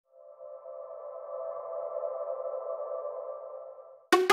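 Channel intro sting: a sustained synthesized chord of steady tones that swells in over the first second and fades away near the end.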